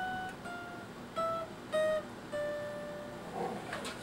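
Acoustic guitar picking five single notes that step down in pitch one after another, the last one left ringing for about a second.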